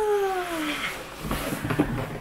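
A woman's long, high exclamation of wonder, a drawn-out 'wooow' that rises and then falls in pitch, dying away under a second in. Then a few light knocks and rustles from the cardboard gift box and its lid being handled.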